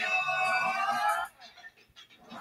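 Jingle music from a television intro bumper, heard through the TV's speaker: a held, slightly rising chord that cuts off suddenly just past a second in, leaving near quiet with a few faint clicks.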